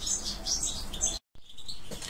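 Small birds chirping over and over in the background, with a brief dropout to silence a little past halfway.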